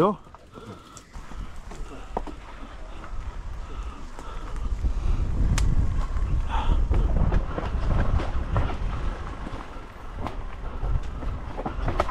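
Mountain bike riding down a dirt trail strewn with dry leaves: a rolling rumble of tyres on dirt, with scattered clicks and rattles over rocks and roots, getting louder about four seconds in.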